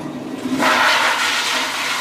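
Toilet flushing: a rushing, hissing surge of water that swells about half a second in and keeps running.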